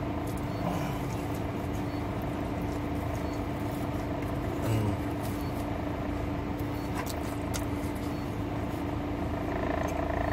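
Steady hum of a parked car running, heard from inside the cabin, with a few faint light clicks and a soft low bump about five seconds in.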